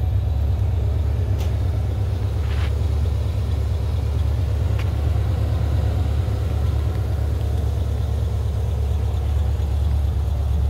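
Supercharged 2010 Camaro SS's 6.2-litre V8, with open headers and dual exhaust, idling with a low, steady drone.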